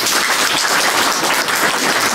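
Audience applauding: many people clapping together, dense and steady.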